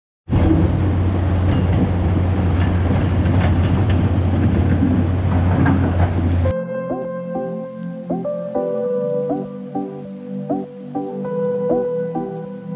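Swollen, muddy river rushing through rapids over boulders, a loud steady wash of water noise. It cuts off abruptly about six and a half seconds in and gives way to background music.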